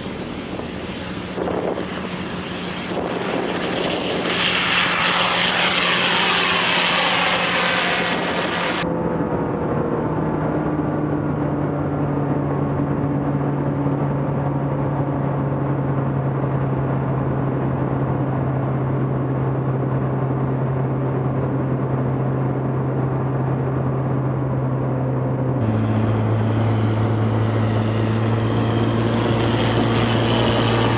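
A Zenith CH750 Super Duty light plane's propeller and 180-hp turbocharged Honda-based Viking engine run at high power for takeoff, growing louder about four seconds in. From about nine seconds the same engine is a steady drone heard from inside the cockpit. Near the end it is heard from outside again as the plane flies past.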